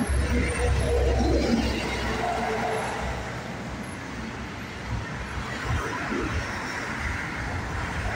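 Road traffic on a city street: motor vehicles passing, with a heavy low engine rumble strongest in the first two seconds, then a steadier traffic noise.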